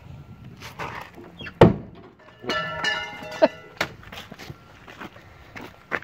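A car door on a 1964 Ford Galaxie 500 being opened: a sharp thunk from the latch about a second and a half in, then the old hinges creaking for about a second, followed by a couple of clicks.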